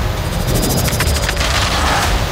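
Dramatic trailer score with a heavy pulsing low end, rapid high ticking and sharp hits, and a rising whoosh near the end.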